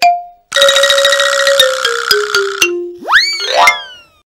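Comic cartoon sound effects: the last ding of a rising chime, then a buzzy tone stepping down in pitch for about two seconds, like a 'fail' jingle, then a quick upward-swooping boing near the end.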